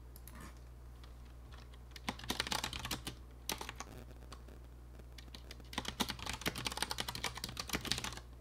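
Typing on a computer keyboard in two runs of quick keystrokes: a short run about two seconds in, then a longer run from about six seconds on.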